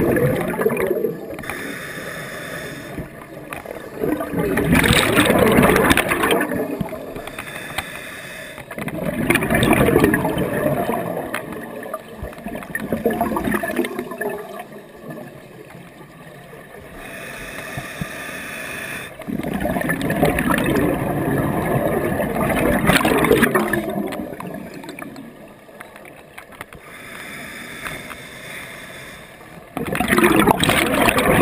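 Scuba diver breathing through a regulator underwater: hissing inhalations alternate with bubbling exhalations. There are about five loud bubble surges a few seconds apart.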